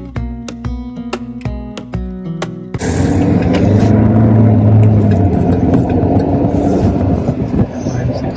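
Strummed acoustic guitar background music that cuts off suddenly about three seconds in, giving way to the loud running noise of a car's cabin on the move: engine and road noise, with a low hum strongest around the middle.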